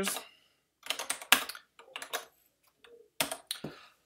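Computer keyboard keys clicking in a few short, scattered groups of keystrokes.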